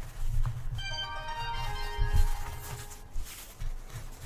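A short chime of several ringing notes, each entering a little after the last and lower in pitch, dying away over about two seconds. Soft low bumps sound underneath.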